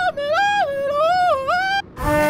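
A woman's high singing voice on wordless notes, leaping up and down between a lower and a higher pitch three times in a yodel-like way, then breaking off near the end.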